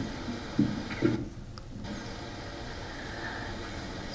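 Quiet room tone: a faint steady hum, with a couple of soft low thumps in the first second.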